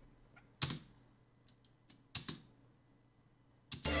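A quiet room broken by three short clicks: one about half a second in, one about two seconds in, and one just before the end.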